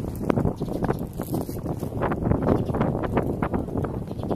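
Wind buffeting a phone's microphone as a low, uneven rumble, with irregular crackles and knocks.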